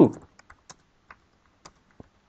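Computer keyboard being typed on: about half a dozen faint keystroke clicks at an uneven pace.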